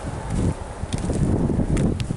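Wind rumbling on the microphone, uneven and low, with a few faint clicks about a second in and near the end.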